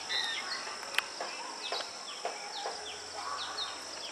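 Insects trilling steadily at a high pitch, with birds calling over it in many short, falling chirps, and a single click about a second in.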